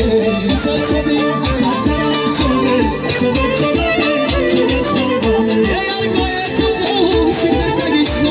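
Loud live Tajik party music through large PA speakers: an electronic keyboard with a string-like melody over a steady drum beat.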